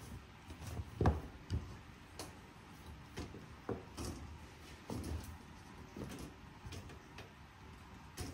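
A series of irregular light knocks and clicks as a perforated metal sheet is worked into the groove of a wooden frame with a small hand tool, and the frame is handled on a workbench.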